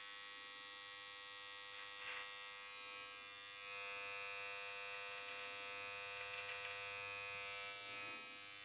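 Gillette Intimate electric trimmer, fitted with its body comb, running with a steady electric buzz as it is held against the chin and worked over a goatee. The buzz grows a little louder about four seconds in.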